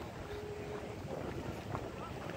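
Steady low rumble of wind and handling noise on a handheld phone microphone while walking.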